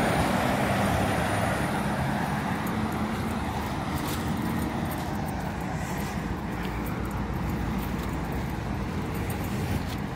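Road traffic on the adjacent street: a steady wash of car engine and tyre noise, loudest at the start and slowly fading.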